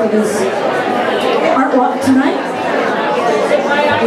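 Chatter of several voices in a room, with a woman's voice close to the microphone.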